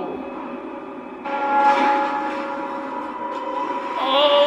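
A sustained, ringing, bell-like chord of several steady tones from the horror episode's soundtrack, entering suddenly about a second in and holding.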